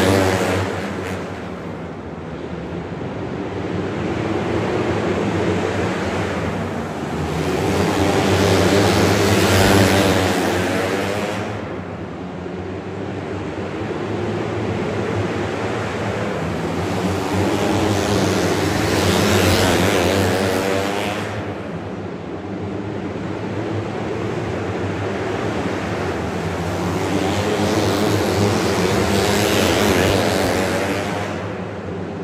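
A pack of outlaw karts racing, many small engines running at high revs together. The sound swells loud as the pack passes about every ten seconds and fades between passes.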